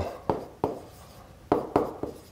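Stylus writing on a tablet surface: short tapping, scratching strokes as the letters are formed, two in the first second and a quicker run of three in the second half.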